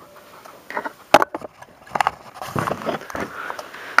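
Handling noise: light rustling with a few sharp clicks and knocks, the loudest about a second in.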